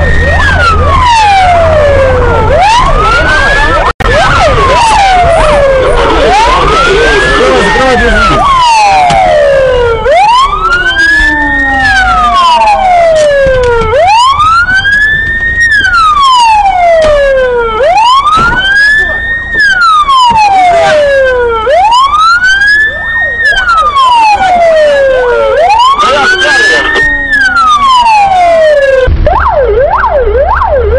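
Police car siren wailing: a tone that sweeps quickly up and then slowly down, repeating about every four seconds. Near the end it gives way to a faster, shorter-cycling siren.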